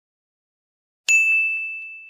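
A single bright bell-like ding sound effect from an animated intro graphic. It strikes about a second in and rings out, fading over the next second.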